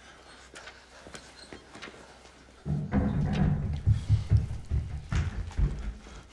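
A deep low rumble with irregular thudding pulses starts suddenly about two and a half seconds in and lasts about three seconds, after a stretch of faint clicks.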